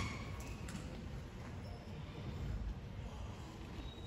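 Hushed auditorium room tone: a low rumble with faint audience rustling and a few small clicks in the first second.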